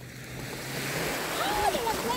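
Small waves breaking and washing up a sandy shore, the wash growing louder through the first half. High-pitched voices call out over it in the second half.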